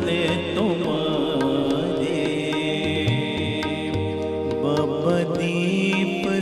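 Shabad kirtan music: harmoniums holding sustained reedy chords under a steady run of tabla strokes, with a singing voice gliding in briefly a couple of times.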